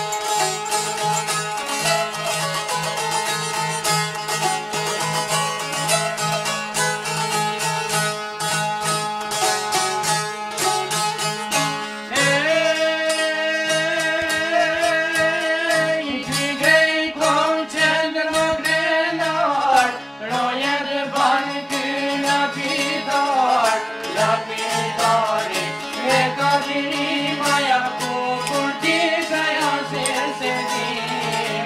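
Albanian folk song: plucked string instruments play over a steady low drone, and a man's voice comes in singing a wavering melodic line about twelve seconds in.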